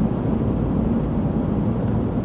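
Steady low road and engine noise inside a moving car's cabin, with no distinct events.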